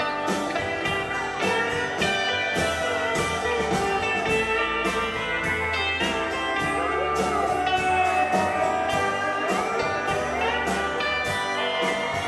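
Live country band playing an instrumental break with a steady beat: guitars and a pedal steel guitar whose notes glide and bend, over bass and drums.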